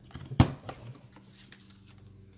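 A single sharp snap of the Stampin' Up! Envelope Punch Board's punch cutting a rounded corner off a strip of cardstock, followed by a few faint paper-handling ticks.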